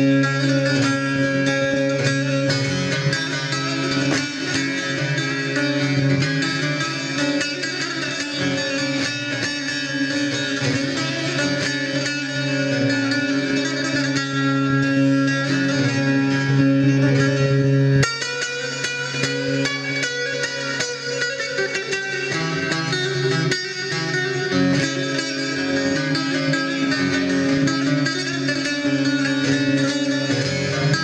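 A long-necked bağlama (Turkish saz) played solo: quick plucked melodic runs over a steady low drone from the open strings. About eighteen seconds in the playing breaks off suddenly and goes on a little quieter.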